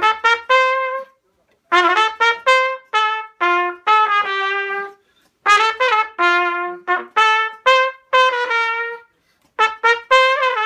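Richards cornet being test-played in short phrases of separate notes, with brief pauses between the phrases about a second in, at about five seconds and near the end.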